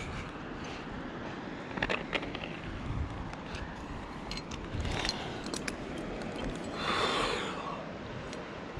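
Scattered light clicks and scrapes of a climber's hands and gear against rock over a steady background hiss, with a breathy swell about seven seconds in.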